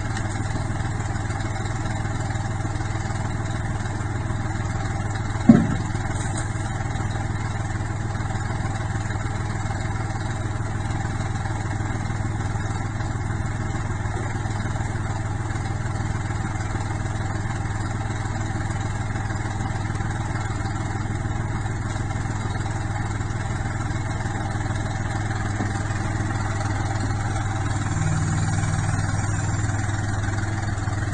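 Kubota compact tractor's diesel engine running steadily at a low hum, its note rising slightly near the end as the front loader is worked. A single sharp knock about five and a half seconds in.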